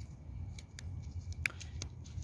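Faint footsteps on an asphalt road: a few light, irregular clicks over a low steady rumble on the microphone.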